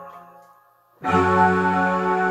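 Electronic keyboard playing slow, held chords. One chord fades away to near silence, then a new chord sounds about a second in and is held.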